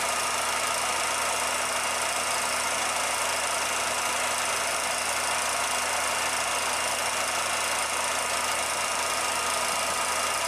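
16mm film projector running, a steady, unchanging mechanical whir and hiss with a few faint steady tones in it.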